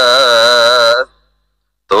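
A man singing a line of Gurbani, holding one long note with vibrato that ends about a second in. After a short silence the singing starts again near the end.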